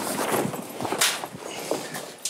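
Plastic tarp being lifted and pulled back by hand, rustling and crackling in a few short strokes, the loudest about a second in.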